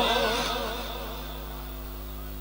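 The echoing tail of a man's chanted recitation fading out over about a second through a public-address system, leaving a steady electrical hum from the sound system.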